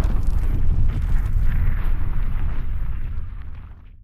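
Cinematic logo-reveal sound effect: a heavy, deep rumble with a noisy hiss above it, fading out over the last second.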